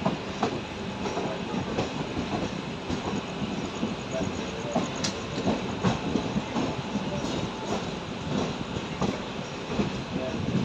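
Passenger train coach wheels running on the track, heard from the open coach doorway: a steady rumble broken by irregular clicks and knocks as the wheels pass over rail joints and yard points.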